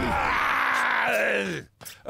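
A long vocal groan with a rough, noisy edge, sliding down in pitch and trailing off about a second and a half in, followed by a brief click.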